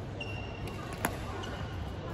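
Badminton racket striking a shuttlecock once about a second in, a single sharp crack in a sports hall, with fainter taps around it. Brief high squeaks of court shoes on the floor come just before the hit.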